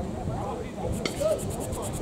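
Home-plate umpire sweeping dirt off home plate with a plate brush: a quick run of light scratchy strokes, about ten in a second, starting about halfway through, over faint voices from the field.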